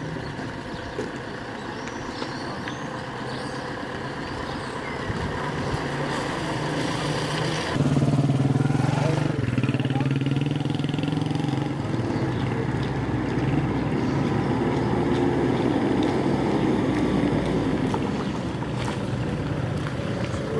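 Street background, then a motorcycle engine running close by that comes in suddenly about eight seconds in and stays loud and steady.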